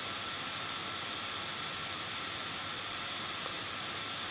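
Steady hiss with a faint high-pitched whine: the recording's background noise, with nothing else sounding.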